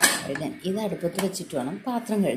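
A sharp metal clink as the whistle weight is set onto the vent of an aluminium pressure cooker lid, followed by a lighter clink about a second later. A voice talks over it.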